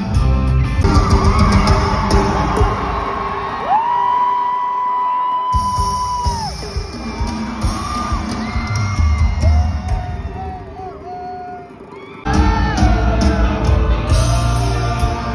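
Live rock band heard from within the audience, with a long high held note about four seconds in and the crowd yelling. The sound jumps abruptly twice, near the middle and near the end, where separate clips are joined.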